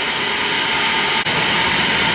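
Steady loud rushing noise of a submersible membrane filtration train and its machinery. About a second in there is a brief click, and the hiss turns brighter as a back pulse starts, reversing clean water through the membrane fibres so the tank overflows into the waste channel.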